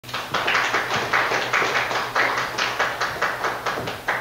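Audience applauding, with many hands clapping at once, easing off a little toward the end.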